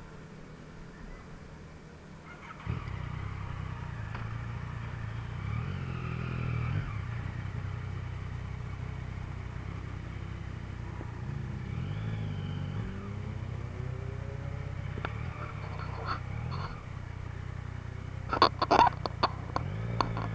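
Yamaha MT-09's 847 cc inline-three engine starting up about three seconds in, idling with light throttle blips, then pulling away at low speed with short revs. A cluster of sharp knocks near the end.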